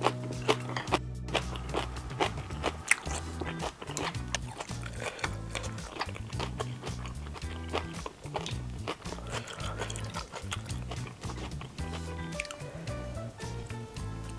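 Background music with a steady bass line, over close-miked eating sounds: sharp wet clicks and smacks of chewing rice cakes and glass noodles in jjajang sauce. The loudest clicks come in the first few seconds.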